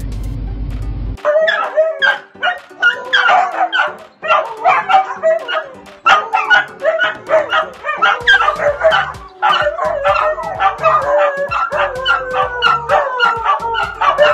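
Pet dogs barking and howling excitedly, short barks coming thick and fast, then long howls that slide down in pitch near the end.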